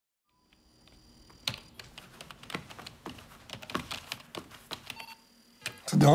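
Typing on a computer keyboard: irregular clicks of the keys, with faint steady electronic tones behind.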